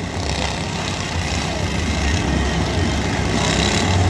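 Small engines of several riding lawn tractors, mostly John Deere, running together in a steady low drone.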